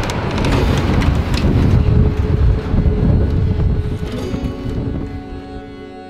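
Wind buffeting the microphone with a heavy, uneven low rumble, easing toward the end as background music fades in.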